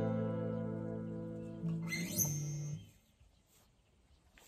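The last strummed chord of a Lava acoustic guitar ringing out and slowly fading. About two seconds in, a short rising squeak and a few low tones, then the sound cuts off abruptly.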